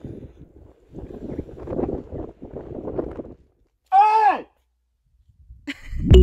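People's voices talking quietly, then about four seconds in a single loud vocal call lasting about half a second that drops steeply in pitch.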